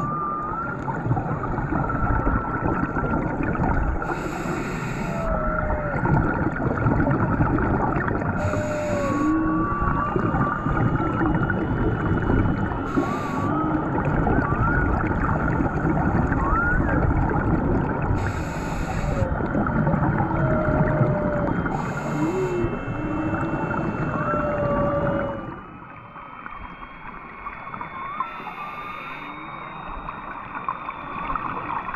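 Humpback whale song heard underwater: many short calls gliding up and down in pitch over a dense crackling background. A scuba regulator's exhaled bubbles burst in every four or five seconds, and the background drops suddenly near the end.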